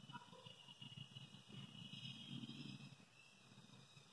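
Near silence: faint room tone, with soft, faint sounds of a pencil writing on lined notebook paper.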